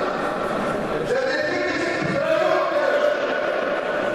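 Speech: a voice with long, drawn-out syllables that echo in a large hall.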